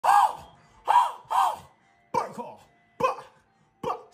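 A man's wordless shouted vocal ad-libs, six short bursts in quick succession, each rising and falling in pitch.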